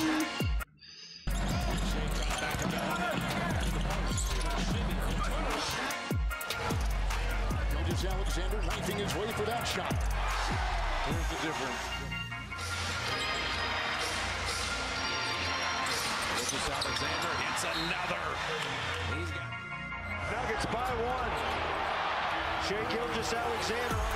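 Basketball game highlight audio: background music over court sounds with a ball bouncing, and bits of broadcast voice. A short gap of near silence comes about a second in.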